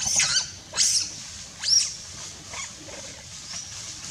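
Young macaque giving three short, high-pitched calls in the first two seconds, each rising and then falling in pitch, followed by a few fainter calls.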